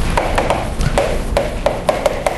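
Chalk tapping and scraping on a blackboard as something is written, a quick irregular series of sharp taps about three a second.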